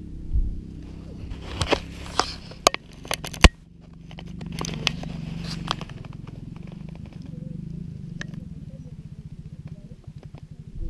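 Low wind rumble on the microphone with scattered clicks and crackles, the loudest a single sharp click about three and a half seconds in. After that a low, steady pulsing hum runs on.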